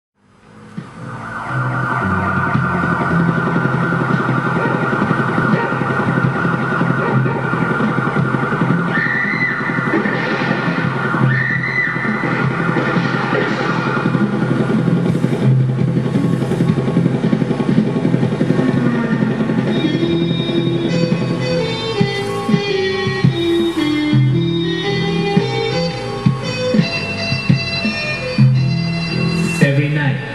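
Instrumental smooth-jazz intro on keyboards and tenor sax. Sustained chords fade in over the first two seconds, and a melodic line moves down and back up in steps in the second half.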